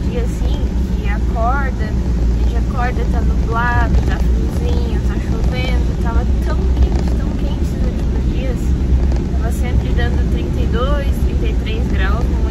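Steady low rumble of a car's interior while driving, with a woman talking over it throughout.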